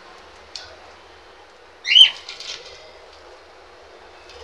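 Budgerigar giving one loud, short call about halfway through, followed by a brief burst of softer chatter from the feeding flock.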